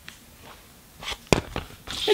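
A CD case being handled, with soft rustling and one sharp click of plastic a little after halfway.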